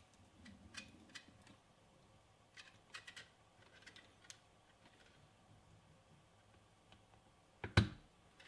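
Faint, scattered clicks and taps of plastic parts being handled as filament is pushed into a 3D-printed fixture on a filament welding clamp, with a louder double click near the end.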